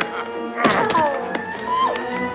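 Film soundtrack: orchestral music with a sudden thunk about two-thirds of a second in, followed by a tone that glides downward and a shorter one that rises near the end.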